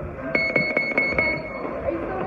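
Boxing gym round timer sounding a high-pitched electronic alarm tone for a little over a second, starting about a third of a second in: the signal for the start of a sparring round.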